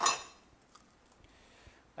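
A single glassy clink with a high ring that dies away within half a second, from a stemmed cocktail glass of crushed ice being handled. Then near quiet with a couple of faint ticks.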